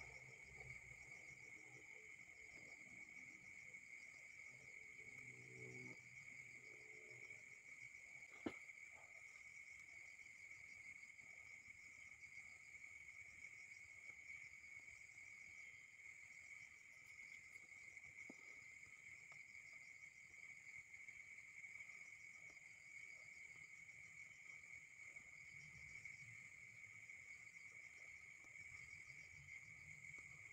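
Faint, steady chorus of insects with a fine rapid pulsing, and a single sharp click about eight seconds in.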